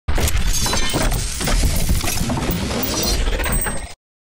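Loud logo-intro sound effect: a dense crashing, shattering noise with heavy bass and many sharp cracks, which cuts off abruptly just before the end.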